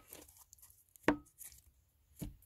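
A single sharp tap about a second in, from tarot cards being handled on the table, with a brief ring after it; otherwise quiet room.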